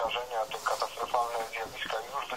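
Speech only: continuous talking with a thin, narrow-band sound, like a voice heard over a radio broadcast.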